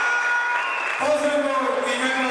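A ring announcer's voice over the hall's PA system, drawing words out in long held tones, with applause underneath.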